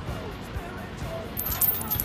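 Small coins clinking as they slip from a hand and fall, about one and a half seconds in, over a faint steady background.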